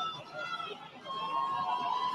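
Faint background voices from the stadium, picked up by the commentary microphone. A thin steady tone joins them about halfway through.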